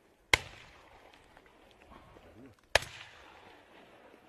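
Two shotgun shots about two and a half seconds apart, each a sharp crack with a short echoing tail.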